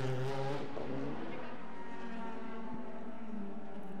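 Audi RS 5 DTM race car's V8 engine as the car pulls away from its pit stop, its note then holding a steady pitch down the pit lane.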